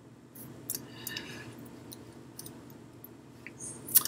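A few light, scattered clicks over faint room tone, with a sharper click near the end.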